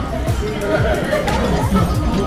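Indistinct chatter of several voices mixed with background music.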